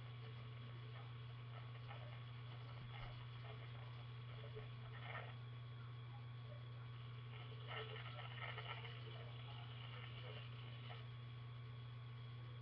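A steady low hum with a few faint, scattered clicks and rustles about halfway through and later.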